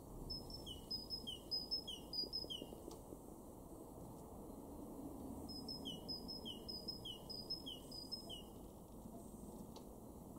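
Great tit singing its two-note song: two phrases, each a run of about five quick repeats of a high note dropping to a lower note, the second phrase starting about halfway through.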